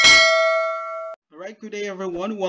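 A single bell-like 'ding' sound effect for the notification-bell click. It rings for about a second and then cuts off suddenly.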